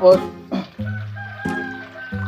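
A rooster crowing over background music, its long held call starting about a second in.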